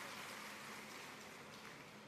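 Faint, steady background hiss of a public-address hall during a pause in speech, fading slightly.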